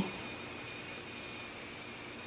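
Steady background hiss of room tone with a faint high-pitched whine; the yarn and hook make no distinct sound.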